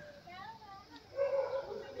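Faint, high-pitched whimpering: a short whine that rises and falls, then a brief held tone about a second later.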